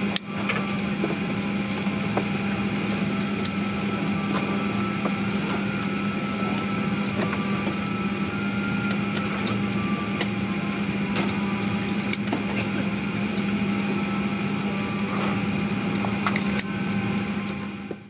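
Steady cabin hum inside a parked airliner waiting to depart, with a strong low drone and a few faint clicks; it fades out at the very end.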